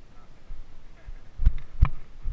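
Boots stepping on loose rock slabs, with two sharp knocks close together about a second and a half in.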